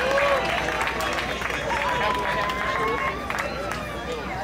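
Audience clapping, with voices talking and calling out over it, including one long drawn-out call in the middle.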